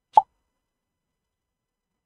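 A single short microphone pop about a fifth of a second in.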